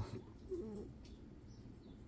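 Quiet room tone with a faint, brief hesitant "uh" from a man about half a second in.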